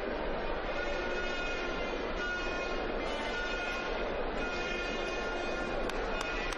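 Steady, even noise of an arena crowd, with faint held tones running through it.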